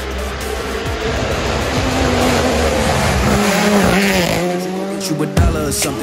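A rally car passing at speed on wet tarmac: engine note rising as it approaches and dropping as it goes by, with loud tyre noise from the wet road at its peak about four seconds in.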